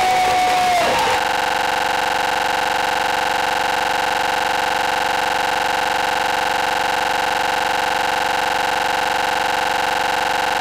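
Crowd cheering over a held note that breaks off about a second in. It is cut suddenly by a loud, steady electronic buzz that does not change.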